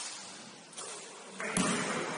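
A basketball thuds once on the hardwood about one and a half seconds in, after a free throw, over a steady sports-hall hiss. There is a sharp tap near the start.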